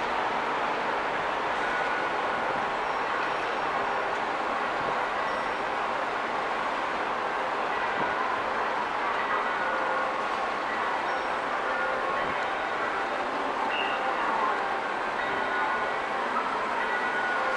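Steady, even din of a busy railway station forecourt, with a few faint short tones sounding through it now and then.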